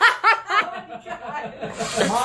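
Human laughter: a run of short laughs, strongest in the first half second and then trailing off.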